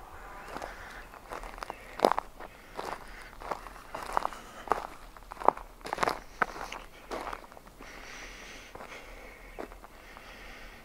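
Footsteps on a needle-strewn forest trail: uneven crunching steps, one or two a second, thinning out after about seven seconds.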